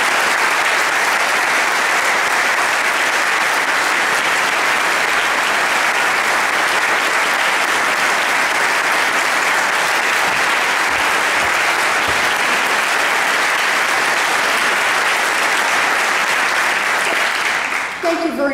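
An audience applauding a speaker onto the podium: dense, steady clapping that stops just before the end.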